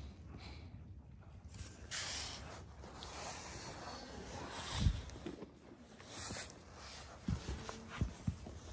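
A pony sniffing and blowing breath right at the phone's microphone, with a few bumps and knocks as its muzzle nudges the phone.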